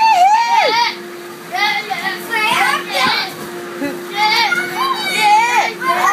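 Children playing: excited high-pitched shouts and squeals in several bursts, over a steady low hum.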